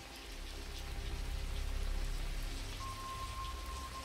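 Steady rain falling, with a low rumble that swells and eases under it. A single thin high tone holds from near the end.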